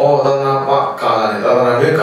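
A Buddhist monk's voice chanting into a microphone in a held, even-pitched recitation tone, in two phrases with a short break about a second in.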